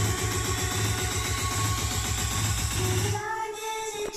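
A song playing through a Pioneer SX-J990 mini hi-fi system's speakers, with a heavy pulsing bass beat. About three seconds in, the bass drops out and only a few lighter held notes are left.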